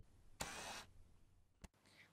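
Near silence, broken by one brief soft hiss about half a second in and a faint click near the end.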